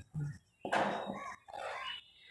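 Dry-erase marker writing a word on a whiteboard: two short scratchy stretches of marker on board, the first longer.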